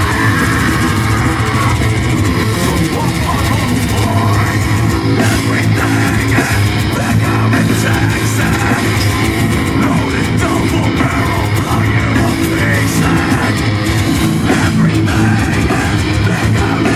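Loud live heavy metal band playing through an outdoor stage sound system: distorted electric guitars, bass and drums, heard from the crowd.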